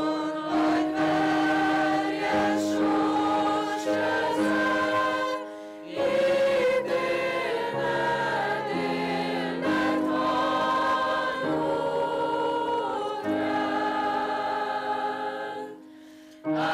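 A choir singing slow, sustained chords in long phrases, with a short pause about five and a half seconds in and another just before the end.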